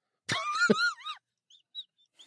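A person's high-pitched, wheezy squeal of laughter, wavering up and down in pitch for about a second, followed by a few faint short squeaks.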